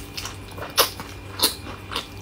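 A person biting and chewing braised meat off the bone, with two loud sharp smacks of tearing meat about 0.8 s and 1.5 s in.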